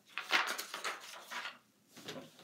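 Cardstock rustling and scraping against the tabletop as a piece is handled, loudest about a third of a second in and dying down after a second and a half.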